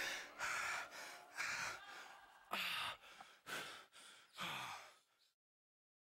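A person breathing hard and gasping, about six heavy breaths roughly one a second, a few of them trailing off in a falling sigh. The breathing stops a little after five seconds in.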